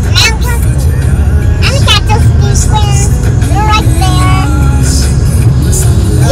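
Steady low road and engine rumble heard from inside a moving car's cabin, with voices and music over it.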